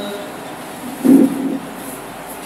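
A pause between phrases of a man's chanted Quran recitation: steady recording hiss, with one short low sound a little over a second in.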